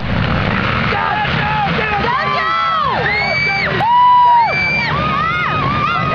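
A field of racing ATVs (quads) launching off the start line together: many engines revving at once, each climbing in pitch and dropping sharply at a gear change, overlapping. One quad is loudest at about four seconds in.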